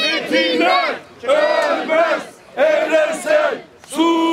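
A young child shouting slogans in a high, loud voice, in short phrases with brief pauses between them.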